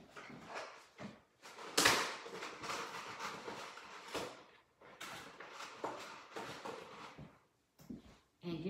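Rummaging through craft supplies for a marker: irregular rustling and sliding of handled objects, with a sharp knock about two seconds in.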